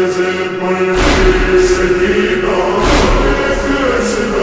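A slowed-down, reverb-drenched noha (Shia lament): voices chanting long held notes, with a deep thump about a second in and another about three seconds in.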